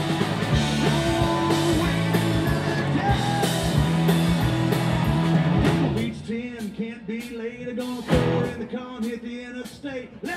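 Live rock band with three electric guitars, bass and drums playing loud. About six seconds in, the band drops back to one electric guitar bending and wavering on held notes over scattered drum hits.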